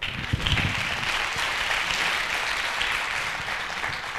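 Audience applauding in a hall, breaking out suddenly and slowly tapering off near the end.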